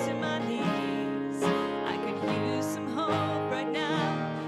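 Live worship band playing a song: strummed acoustic guitar over keyboard.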